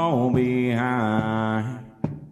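A country song ending: a singer holds a long final note over the band, then the music fades out near the end.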